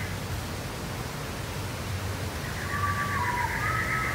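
Insects chirping in a rapid trill that fades out at the start and comes back about two-thirds of the way through, over a steady background hiss and low hum. A few short whistled notes join near the end, one of them falling in pitch.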